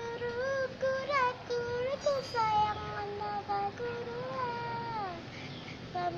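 A high-pitched voice singing a slow melody in long held notes, with no clear instrumental backing; near the end a note slides down in pitch.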